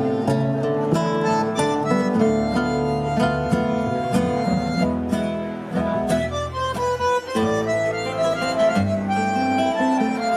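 Argentine tango played live on bandoneon, nylon-string classical guitar and double bass: held bandoneon chords and melody over plucked guitar and bass notes. About six seconds in, the texture thins for a moment to a single higher melodic line before the full ensemble returns.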